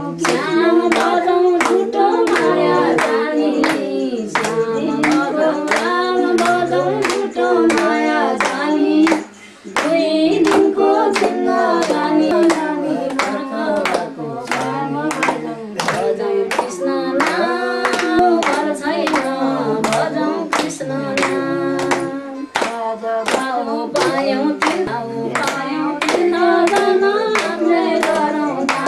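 People singing a devotional bhajan together in Nepali while clapping their hands in time, about two claps a second. The singing breaks off briefly about nine seconds in, then resumes.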